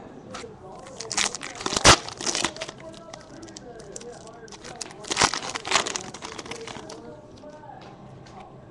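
Foil wrapper of a Bowman Chrome baseball card pack being torn open and crinkled by hand: irregular crackles and crinkles, with the sharpest snaps about two seconds in and again about five seconds in.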